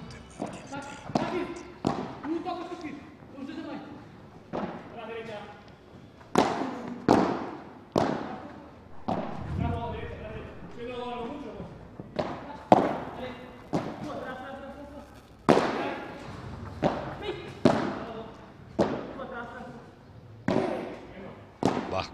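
Padel rally: the ball is knocked back and forth with solid rackets, making sharp knocks at an irregular pace of roughly one a second, each followed by a short echo.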